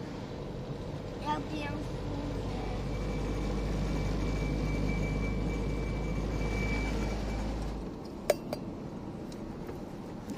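Car driving at speed, heard from inside the cabin: a steady rumble of road and engine noise swells over several seconds and then drops suddenly near the end, followed by a single sharp click.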